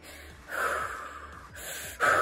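A woman breathing deeply and audibly: one long breath, then a second long breath that turns into a sigh near the end.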